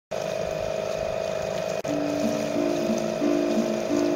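Steady rushing noise with a constant hum underneath. From about two seconds in, held musical notes step between a few pitches.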